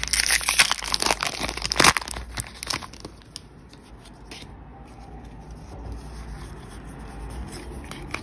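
A foil Pokémon booster pack wrapper being torn open and crinkled, a dense crackle with its sharpest rip about two seconds in. After that it settles into faint rustling as the cards come out.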